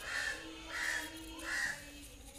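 A crow cawing three times, about two-thirds of a second apart.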